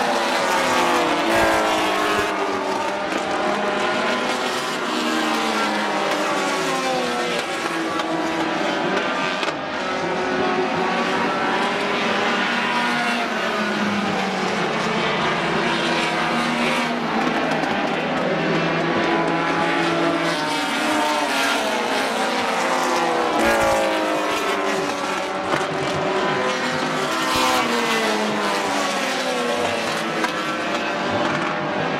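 A pack of oval-track stock cars racing, several engines overlapping and rising and falling in pitch as the cars accelerate and lift around the track.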